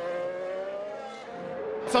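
Formula 1 cars' turbocharged V6 engines accelerating, the engine note rising slowly in pitch and then fading a little as the cars pull away.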